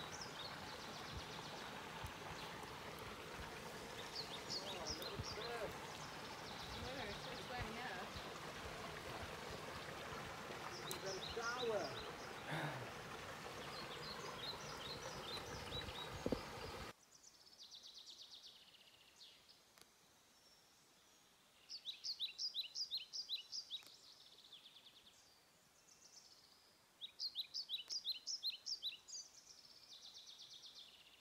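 Forest birds singing phrases of rapid, repeated high notes over a steady rush of running water from a small waterfall. The water sound cuts off suddenly about halfway through, and two loud song phrases stand out near the end.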